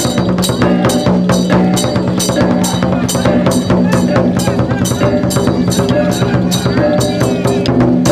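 Chinese dragon-dance percussion: a large barrel drum beaten with metal percussion in a steady, loud rhythm of about three strokes a second, with a ringing tone held underneath.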